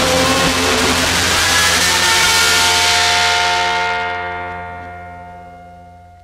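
The last chord of a 1960s garage-psych rock band ringing out, with cymbal wash over it. It holds steady for a few seconds, then dies away over the last two seconds, the high cymbal wash going first.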